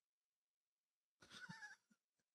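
Near silence, broken about one and a half seconds in by a brief, faint suppressed laugh from a man.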